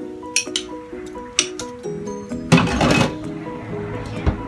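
A metal spoon clinking and scraping against a small glass cup as butter is scooped out into a pot: a few sharp clinks, then a louder scrape in the middle. Light plucked-string background music plays throughout.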